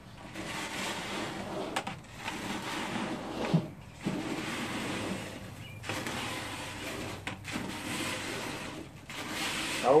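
Hands mixing instant white rice with ketchup, flavouring powder and salt in a plastic bucket: a steady wet rustling and scraping of grains churned against the bucket, with brief pauses about every two seconds.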